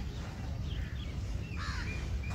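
Birds calling: a few short faint calls a little under a second in and a louder, harsh call near the end, over a steady low rumble.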